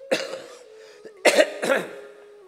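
A man coughing into a cloth held to his mouth, close to the microphone: one cough just after the start, then two quick coughs together about a second later.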